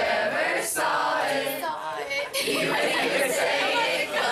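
A class of teenagers singing a Christmas carol together without accompaniment, many voices at once with some chatter mixed in.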